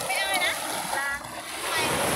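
Small waves washing up a sandy beach: a steady rush of surf, with a few short bits of voice over it.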